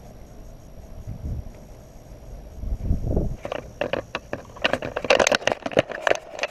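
A camera on its tripod being knocked and handled: a low rumble of handling noise on the microphone, then from about three and a half seconds a fast run of clicks, knocks and rattles, loudest near the end.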